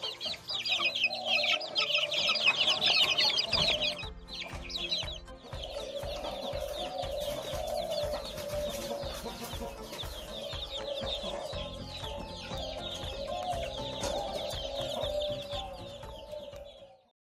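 A crowd of young Bangkok chicken chicks peeping rapidly and continuously, loudest in the first four seconds. Background music with a steady beat runs underneath from about four seconds in.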